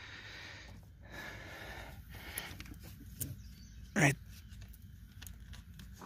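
Faint rustling and a few light scattered clicks from a hand working a small hose fitting at the back of an engine's intake manifold.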